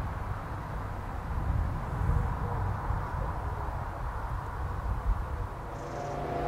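Outdoor background noise: a steady, uneven low rumble with a light hiss above it and no distinct events.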